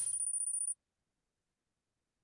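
A thin, high-pitched steady tone, two pitches sounding together, lasting under a second before the sound cuts off to dead silence.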